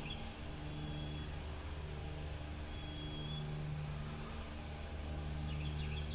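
Steady low mechanical hum, with faint thin high tones coming and going and a few short bird chirps near the end.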